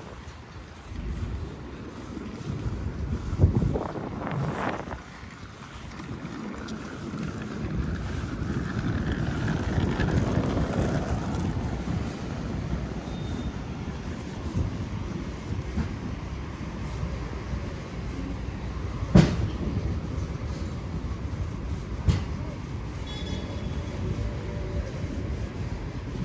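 City street noise with the low rumble of a passing vehicle that swells to a peak in the middle and then eases off. Sharp knocks sound a few seconds in and twice later on, the loudest about two-thirds of the way through.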